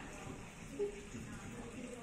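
Faint, indistinct voices over quiet indoor room tone, with one brief louder murmur just under a second in.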